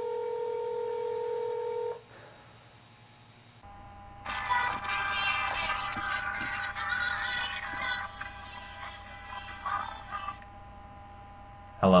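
A steady telephone tone, as heard when a call is placed and rings at the other end, sounds for about two seconds and stops. After a short pause, music with a voice plays for about six seconds.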